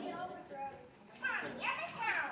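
Children's voices: chatter from a group of kids, with a high, gliding call from a child in the second second.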